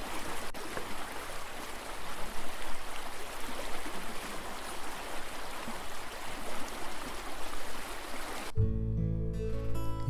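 Steady rushing of flowing stream water. Acoustic guitar music comes in about eight and a half seconds in.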